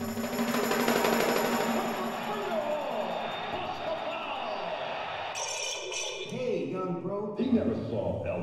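Prerecorded electronic part of a piece for percussion and tape: a dense wash of processed, chopped voice sounds sliding up and down in pitch, with a bright hiss for about a second near five seconds in. Light hand playing on small drums sits under it.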